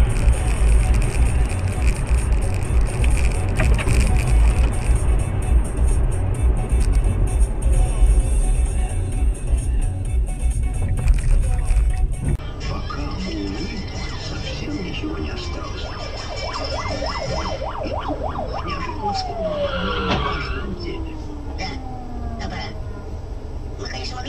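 Heavy low rumble of a car driving at speed, heard from inside through a dashcam. About halfway it cuts to a different, quieter dashcam recording with whining tones, several of which glide steeply down in pitch.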